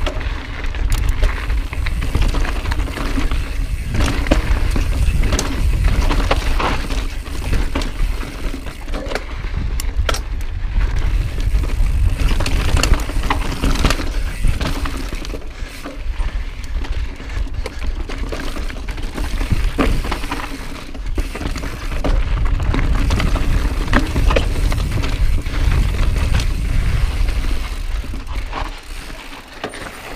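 Mountain bike riding fast down rocky singletrack: tyres crunching over gravel and rock, with frequent sharp knocks and rattles from the bike, over a steady deep rumble of wind on the camera mic.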